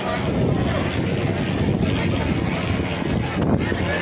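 Steady wind buffeting the microphone on a ship's open deck over a low engine rumble, with a crowd of passengers chattering.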